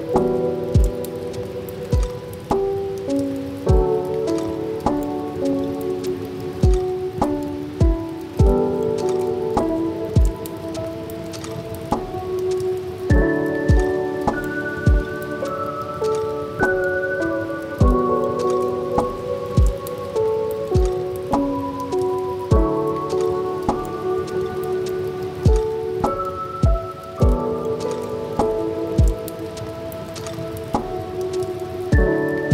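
Mellow chill music with sustained chord notes and a soft, regular drum beat, with the sound of steady rain layered over it.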